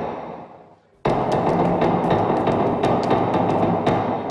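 Dramatic film score built on heavy percussion hits: a booming hit dies away, then a second one lands about a second in and rings on with quick ticking percussion over it, fading toward the end.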